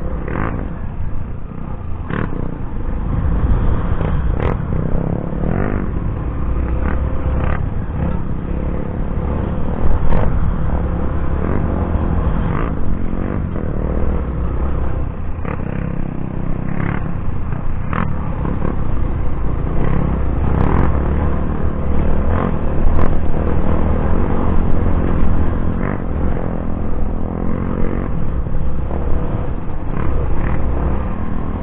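Off-road motorcycle ridden over a rocky dirt trail, heard from an onboard action camera: a heavy, continuous low rumble of engine and wind, broken by frequent sharp knocks and clatter as the wheels hit stones.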